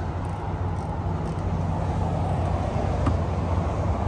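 A steady low engine hum with an even background hiss, unchanging, from a motor running somewhere on the lot.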